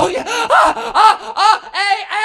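A man's loud, high-pitched vocal cries into a microphone, about five in a row, each rising and falling in pitch: staged orgasmic moans of "oh".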